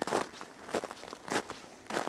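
Footsteps crunching in crisp snow at a steady walking pace, four steps in two seconds.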